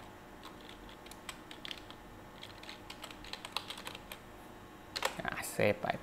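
Computer keyboard being typed on: faint, irregular runs of key clicks as a file name is entered.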